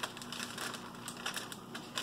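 Parchment paper rustling and crinkling in short, irregular crackles as the edges of a pie crust are folded over by hand.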